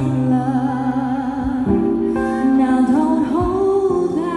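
Live bossa nova jazz arrangement: a woman singing long, wavering notes over acoustic guitar chords, the chord changing about halfway through.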